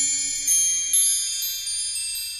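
High, shimmering bell-like chime tones ringing and slowly fading, with fresh soft strikes about half a second and a second in, as theme music dies away underneath.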